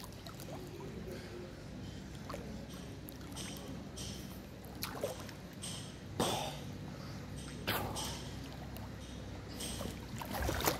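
Pool water sloshing and lapping as a person moves through it, with a few small splashes, over a steady low hum.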